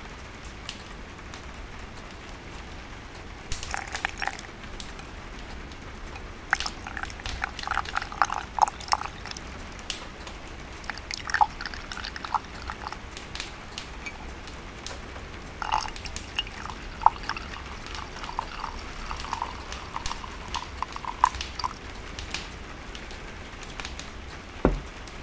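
Wood-burning stove fire crackling, with irregular clusters of sharp pops and snaps, over a steady low background of rain and wind.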